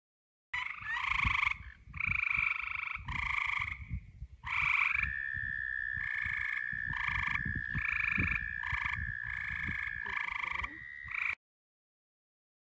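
Frogs calling at night: short trilled calls repeated about once a second, with one long steady trill running through the middle for about five seconds. A low rumble sits underneath.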